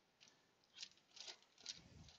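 Faint handling noise: four or five soft ticks and crinkles about half a second apart as truck parts in plastic bags are picked up and moved.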